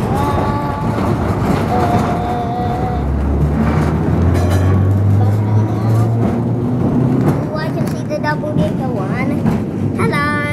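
Electric tram running along its track with a steady rumble from wheels and rails. About three seconds in, its low motor hum rises in pitch as it picks up speed.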